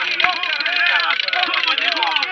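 Several voices of spectators and players calling out and talking over one another at an outdoor football match, with a few sharp knocks among them.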